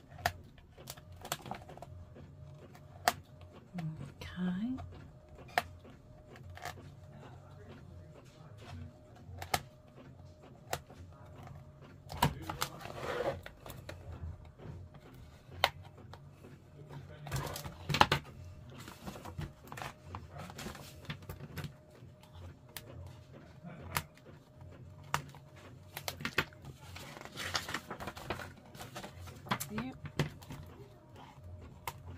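Small scissors snipping paper pages free at a book's spine: sharp clicks of the blades scattered throughout, with paper rustling as the pages are handled, loudest about midway and near the end.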